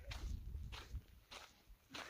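Footsteps crunching on a dry dirt path, an even walking pace of four steps about 0.6 s apart, with a low rumble under the first second.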